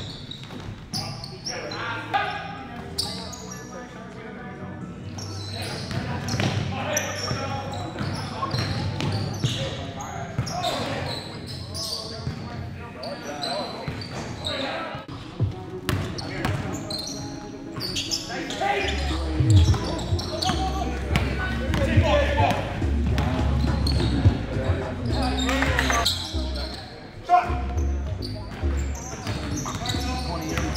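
Indoor basketball game: the ball bouncing on a hardwood gym floor as players dribble, with voices echoing in the hall. A deep low rumble joins in about twenty seconds in.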